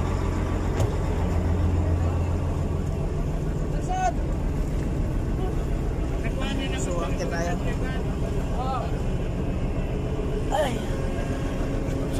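A steady low drone of ship's diesel machinery running, strongest in the first few seconds, with brief snatches of voices over it.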